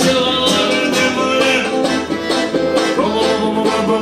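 Live band music: an instrumental passage with plucked string instruments and a steady beat.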